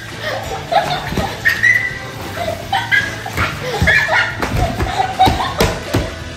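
Two boys yelping, grunting and laughing without words while they wrestle on a leather couch, with several thumps as bodies and feet hit the cushions.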